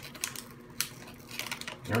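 Plastic blind-bag toy wrapper crinkling and crackling in irregular sharp bursts as it is ripped and pulled open by hand.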